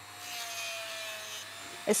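Dremel 3000 rotary tool at speed setting six, its coarse 60-grit sanding band grinding the edge of a resin blank: a steady motor whine that drops slightly in pitch, over a sanding hiss.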